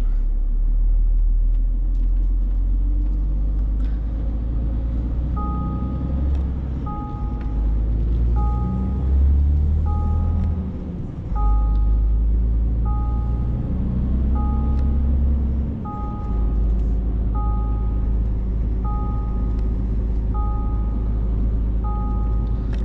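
Heavy truck's diesel engine running, heard inside the cab as a steady low rumble that briefly drops twice, as between gears. About five seconds in, a two-tone electronic warning chime from the cab starts and repeats about every second and a half.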